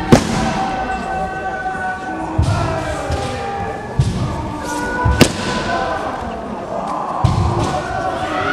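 Jiu-jitsu partners working techniques on gym mats: sharp slaps and dull thumps of hands, gis and bare feet on the mats, with the loudest slap just at the start and another about five seconds in.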